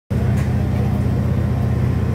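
An engine idling: a steady low rumble with a fast, even pulse.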